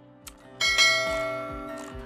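A faint click, then about half a second in a struck bell chime that rings with many overtones and slowly fades. It is the bell sound effect of a subscribe-button animation.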